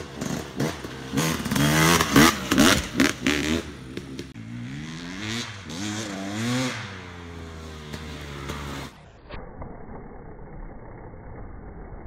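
Dirt bike engine revving as the rider works the throttle along a trail, its pitch rising and falling again and again, loudest in the first few seconds. After about nine seconds the engine sound turns duller and steadier.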